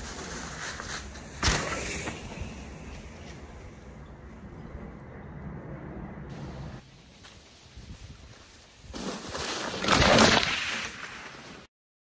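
Mountain bike rolling through dry leaves, with a sharp thud about a second and a half in as it lands a small drop off a stone wall. Near the end comes a loud rustling close to the microphone, and then the sound cuts off.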